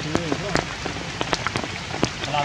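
Steady rain falling, with many sharp, separate drop hits throughout.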